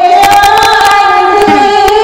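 A woman singing one long held note that rises slightly in pitch and drops away near the end, over a strummed acoustic guitar.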